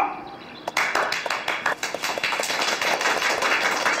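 A small group of people clapping in applause, starting under a second in as a quick, dense patter of many hands.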